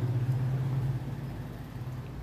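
A steady low hum, like a motor or engine running, a little louder in the first second.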